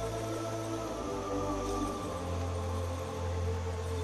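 Background music: slow, ambient-style music with sustained chords over a deep bass note that shifts about a second in and again about two seconds in.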